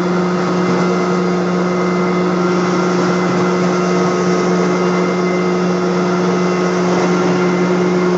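Rotovac rotary carpet extraction head spinning on carpet under truck-mount vacuum suction: a steady motor hum with a continuous airy suction hiss.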